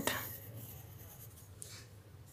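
Faint scratching of a compass's pencil on paper as a circle is swept round.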